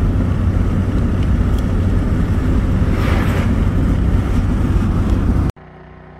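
Cabin noise of a van driving: a steady, loud low rumble of engine and road. It cuts off abruptly about five and a half seconds in and gives way to a much quieter steady hum.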